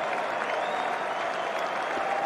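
Large cricket-ground crowd applauding steadily after a wicket falls.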